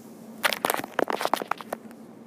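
A bearded dragon's claws scratching and clicking on the phone right at its microphone: a quick, irregular run of crackly scrapes lasting about a second and a half.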